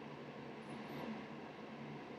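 Faint steady hum and hiss with no distinct event.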